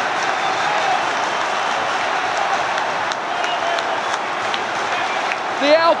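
Large stadium crowd cheering and applauding a home goal in one steady, unbroken wall of noise.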